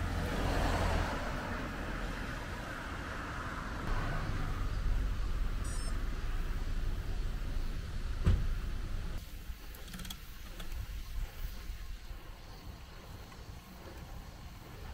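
Roadside traffic noise: a car passing on the road, with low rumble on the microphone. There is one sharp knock about eight seconds in, and the noise drops to quieter outdoor ambience after about nine seconds.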